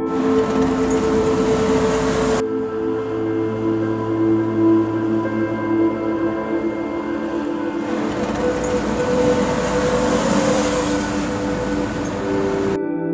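Soft ambient background music with long held tones throughout. Over it, a car passes: a white Mitsubishi Xpander MPV drives up and goes by close on an asphalt road, its engine and tyre noise swelling to a peak near the end. A broad hiss fills the first couple of seconds.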